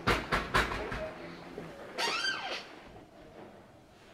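Three sharp knocks in the first second, then a brief squeak that rises and falls in pitch.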